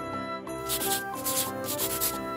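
Scratchy rubbing strokes like a crayon scribbling on paper, in repeated short bursts, over light instrumental background music.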